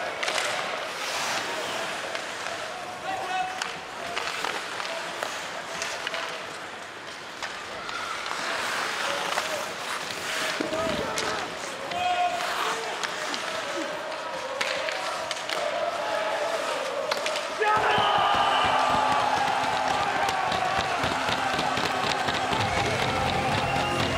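Ice hockey game sound from the arena: a steady crowd murmur with sharp clacks of sticks and puck against the ice and boards. About 18 seconds in, as a goal goes in, the crowd noise jumps suddenly into loud cheering.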